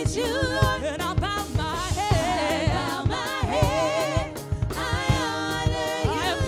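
Female gospel praise team singing a worship song in harmony, voices held with vibrato, over instrumental backing with a steady drum beat.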